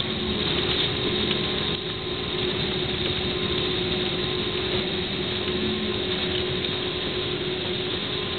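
Steady cabin noise of an airliner rolling down the runway just after landing: a loud, even rush of engine and air noise with a steady low hum running under it.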